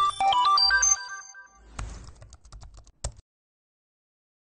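Short electronic logo sting: a rapid flurry of bright, short synth tones, then a crackle of glitchy clicks, ending on a sharp click about three seconds in.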